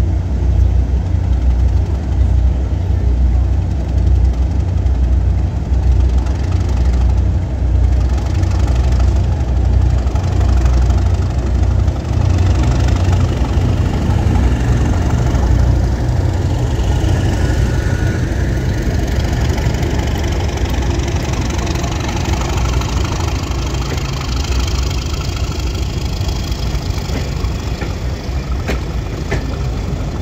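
Diesel locomotive's engine running with a heavy, steady low rumble as it draws slowly past at close range hauling coaches. The engine is loudest in the first half; in the second half it eases and the noise of the coaches' wheels on the rails takes over.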